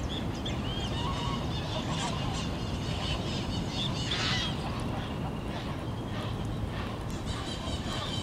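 Domestic geese honking repeatedly, a flock of overlapping calls that grows loudest about four seconds in, over a steady low background rumble.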